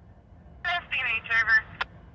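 A short, thin-sounding voice transmission over a railroad scanner radio, about a second long, followed by a sharp click near the end, over a steady low rumble.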